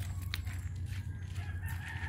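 A rooster crowing, one long drawn-out note starting near the end, over a steady low hum.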